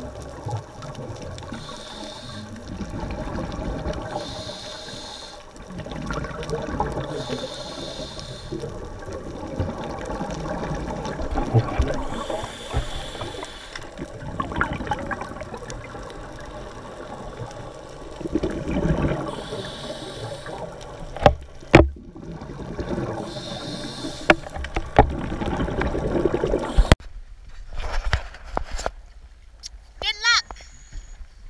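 Underwater scuba breathing through a regulator: a short hiss on each breath every few seconds and a steady bubbling of exhaled air. Near the end a few sharp knocks sound over a quieter background.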